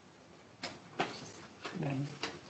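A man sitting down in a chair: two sharp knocks about half a second apart, then a short low pitched sound near the end.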